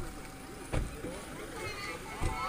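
Indistinct voices of several people talking, with one dull low thump a little under a second in.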